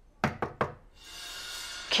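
Three quick knocks on a door, followed by a tense background music cue swelling in from about halfway.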